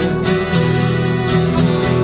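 Instrumental passage of a song: acoustic guitar strumming over held chords, with no singing.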